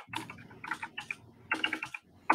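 Computer keyboard being typed on: quick runs of key clicks in about three bursts, entering a line of Rust code.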